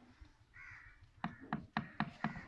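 A crow cawing: one rough call about half a second in, then short caws in quick succession, about four a second, in the second half.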